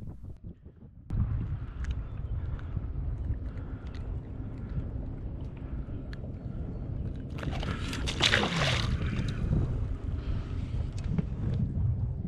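Wind on an action-camera microphone on open water: a steady low rumble that starts about a second in, with a louder rush of noise about eight seconds in.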